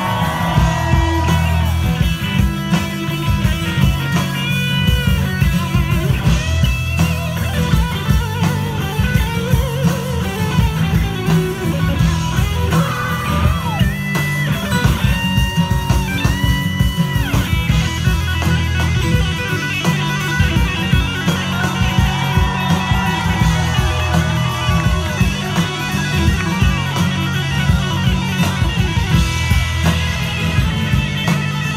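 Live rock band playing an electric guitar solo over drums and bass: long held guitar notes bent up and down in pitch above a steady beat.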